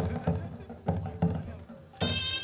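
Drum beats: about five heavy hits in two seconds, in an uneven folk rhythm.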